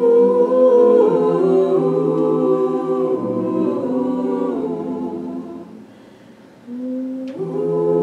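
A mixed a cappella vocal group singing held chords in close harmony. About six seconds in, the voices fade to a brief lull. Then a single low voice comes in, and the full chord swells back a moment later.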